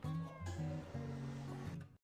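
Faint background music with steady low bass notes and a short sliding high note near the start; it cuts off just before the end.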